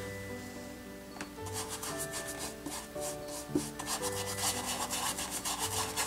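A small brush rubbing acrylic paint onto a stretched canvas in quick scrubbing strokes, over soft background music with held notes.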